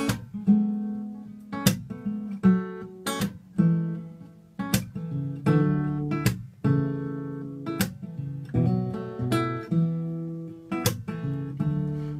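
Solo acoustic guitar playing the instrumental introduction to a song: strummed chords struck about once a second and left to ring, with no voice yet.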